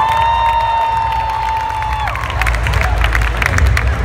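Crowd cheering, with one high-pitched voice holding a long shout for about two seconds, then scattered clapping and applause.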